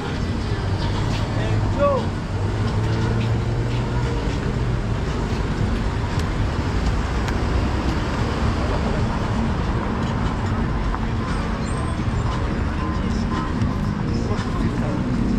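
Busy city street ambience: steady road traffic with vehicle engines running, mixed with people talking in the background.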